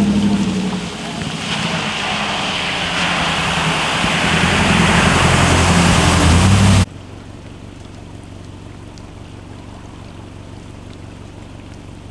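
A Chevrolet pickup truck's engine running as it drives into deep floodwater, followed by the rush of water thrown up by the tyres and body. The rush builds steadily louder over several seconds and cuts off abruptly about seven seconds in. After that comes a much softer, steady noise of rain and running floodwater.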